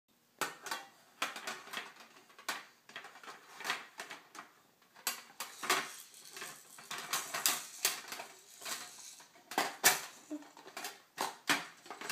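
Small plastic toys clattering against a metal tin box as they are packed into it by hand: a long run of irregular knocks and clinks.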